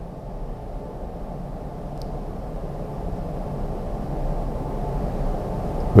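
A low rumble that grows slowly louder, with a faint tick about two seconds in.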